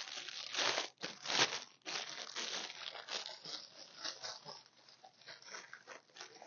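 Thin plastic packaging crinkling as it is handled. The rustles come in irregular strokes, louder in the first second and a half, then thinning to faint, scattered crackles.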